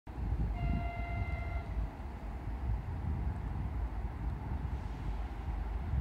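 A locomotive horn sounds once, about half a second in, as one steady note lasting about a second. It plays over a constant, uneven low rumble.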